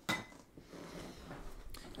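A single sharp clink of a hard object against a glass dish, ringing briefly, followed by faint handling sounds.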